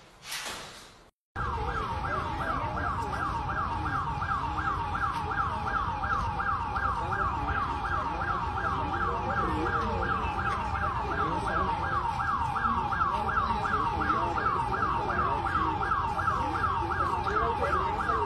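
An outdoor public-warning siren sounding a fast, repeating rising whoop, about three sweeps a second, steady and unbroken. It is most likely Mexico's seismic alert (SASMEX) going off during the earthquake.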